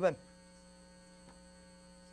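A steady electrical hum, several fixed tones held level without change, after a man's spoken word ends right at the start.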